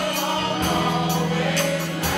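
Gospel choir singing over a live band of organ, keyboard, bass and drums, with a held low bass note under the voices and a few cymbal hits.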